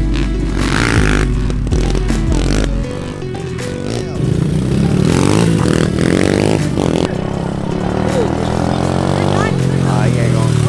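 Music with a heavy bass line for the first three seconds or so. Then small off-road motorcycle engines, dirt bikes and pit bikes, take over, revving with the pitch rising and falling repeatedly.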